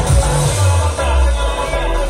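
Loud electronic dance music played through a DJ sound system of one bass cabinet and two top speakers. A heavy bass beat gives way, about half a second in, to a long held low bass note.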